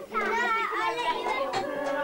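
Children's voices and chatter, with a few held, sung-sounding notes.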